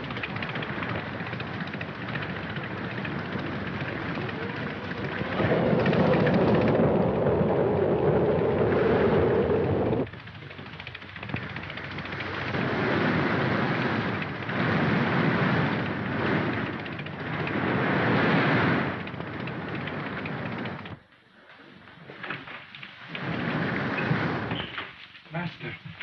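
Storm sound effects: a dense rush of rain and wind with rolling thunder, swelling loudest a few seconds in and again in the middle, then falling away sharply about five seconds before the end.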